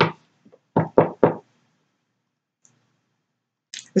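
A card deck tapped against a tabletop: a click at the start, then three quick knocks close together about a second in.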